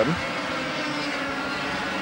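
A pack of 100cc two-stroke racing karts running together at race speed, a steady engine drone.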